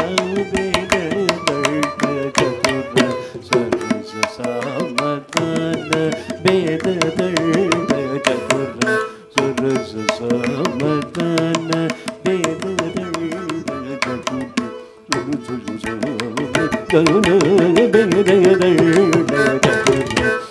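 Carnatic classical music: a gliding melodic line with mridangam drum strokes, in raga Kapi Narayani, getting louder for the last few seconds.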